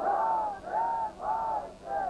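A man's lamenting voice chanting in a high register, singing three drawn-out notes that each rise and fall, in the style of a Shia mourning lament (noha).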